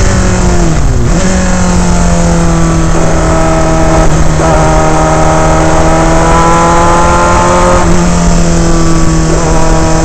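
Onboard sound of a Dallara Formula 3 car's Alfa Romeo four-cylinder racing engine. Its revs drop about a second in, then hold at a nearly steady pitch, with small shifts near the middle and near the end. A heavy rumble of wind and road noise runs under it on the microphone.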